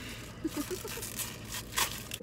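Food packaging being torn and crinkled as a barbecue sauce container is opened: a few sharp rips and scrapes, the loudest near the end.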